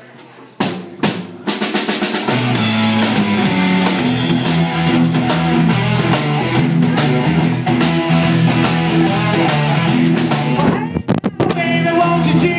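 Live rock-blues band starting a song: a few separate drum hits, then the full band comes in with drum kit and a steady bass line. Near the end the band stops briefly for a couple of sharp hits.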